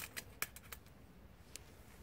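Twig fire crackling in a stainless steel woodgas stove: a cluster of sharp crackles and clicks in the first second, then only occasional faint ticks.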